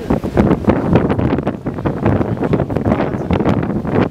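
Wind blowing on the microphone, an uneven rumbling noise that rises and falls.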